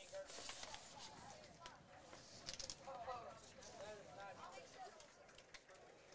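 Faint ballpark crowd ambience: distant spectators' voices chattering, low in level.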